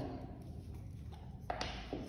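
A few light taps and clicks from painting tools being handled as yellow paint is picked up. The sharpest comes about a second and a half in, closely followed by a second.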